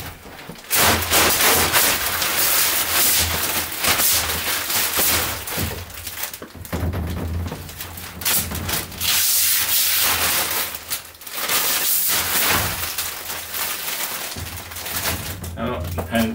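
Protective plastic film being peeled off a plexiglass sheet and bunched up, a continuous crackling and rustling that swells and fades as the film comes away.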